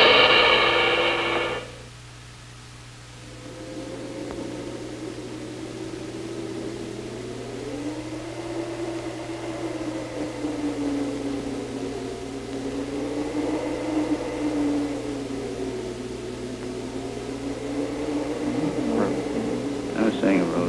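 A loud, blaring sustained tone that cuts off about two seconds in. After it, a quieter wavering tone slowly rises and falls, over a steady low hum from the old film soundtrack.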